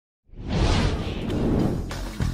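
A whoosh sound effect with music, swelling in after a moment of silence, as an animated title sting opens.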